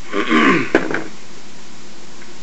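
The last of a pour from a glass cider bottle into a drinking glass: a short gurgling splash that falls in pitch. About three-quarters of a second in comes a sharp clack, the bottle set down on the table, with a couple of lighter knocks after it.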